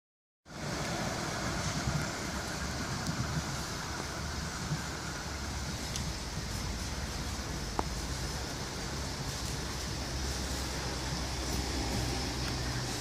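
Steady outdoor rumble of distant traffic, with the faint sound of a far-off tram moving slowly through a track loop; a single light click about eight seconds in.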